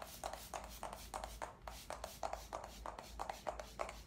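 MAC Fix+ setting spray misted onto the face: a rapid run of short hisses from the pump bottle, about five a second.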